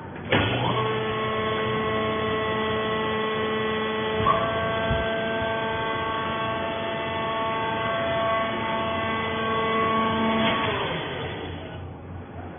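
Hydraulic fibre baler's electric motor and pump starting up with a rising whine, running steadily for about ten seconds with a brief clunk about four seconds in, then winding down as it stops.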